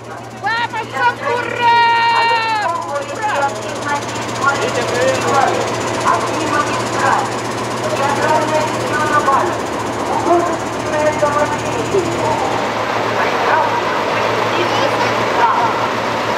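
Crowd of people talking and calling out, with a few long shouts in the first seconds, over a steady low hum that stops about three-quarters of the way through.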